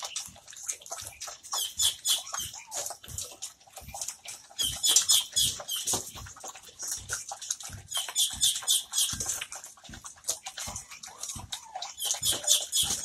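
Two American Pit Bull Terriers eating from metal bowls: quick, irregular chewing and crunching that comes in bursts of a second or two, with small clicks against the bowls.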